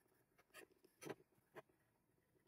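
Faint scratching of a graphite pencil drawn along the edge of a black G10 knife handle scale, marking its outline in a few short strokes about half a second apart.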